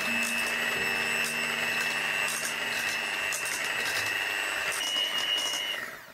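Electric hand mixer running steadily, its beaters whipping chocolate cream in a pan chilled over ice water. Its whine steps up slightly in pitch shortly before it cuts off.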